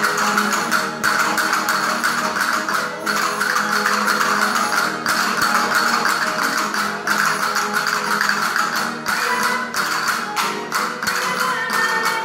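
Live Spanish folk dance music: plucked string instruments playing a rhythmic tune, with castanets clicking in the dancers' hands.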